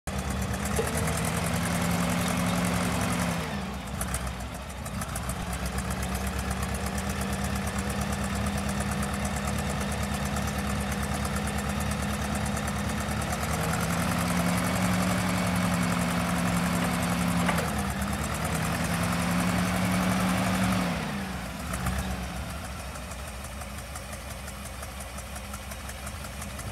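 Clark G500-Y55 LPG forklift's propane engine running. Its pitch steps up for stretches while the hydraulics raise the mast and forks, then settles to a lower, quieter idle near the end.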